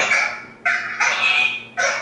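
An animal calling over and over: short, sharp, loud calls with sudden starts and quick fades, about two a second.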